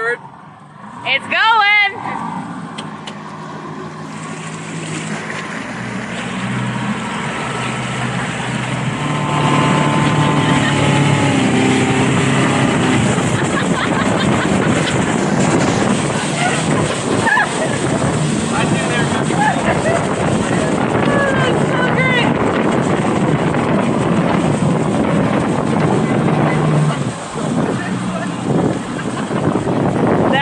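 Motorboat engine speeding up over the first several seconds and then running steady at speed while towing a tube, with wind on the microphone and the rush of water from the wake. A loud wavering yell comes about a second in, and faint short cries come later.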